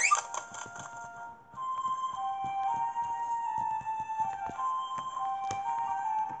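Children's story app background music: a simple, gentle melody of held notes, coming in about a second and a half in.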